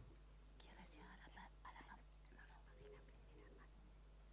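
Faint whispering, loudest in the first half, over a steady low electrical hum and hiss.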